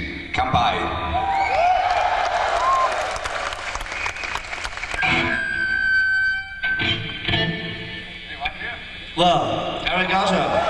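Rock concert audience cheering and shouting between songs in a large hall, with a long held electric guitar note about halfway through.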